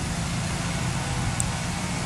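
Steady urban background noise with a low rumble, typical of road traffic.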